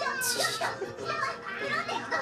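Anime soundtrack: high-pitched Japanese voice acting in shouted lines ('Hey, stop!') over background music, with a short hiss about a quarter of a second in.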